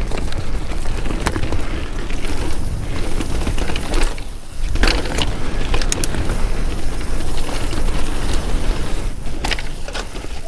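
Devinci Wilson downhill mountain bike rolling fast down a dirt singletrack: tyres running over dirt and roots with chain and frame clattering over the bumps, under heavy wind rumble on the action-camera microphone. The tyres are pumped hard to about 40 psi, so the small bumps come through as rattle. The noise drops briefly about four and a half seconds in.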